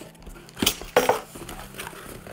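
A utility knife slicing packing tape on a cardboard box, then the cardboard flaps pulled open, heard as a few sharp scrapes and knocks.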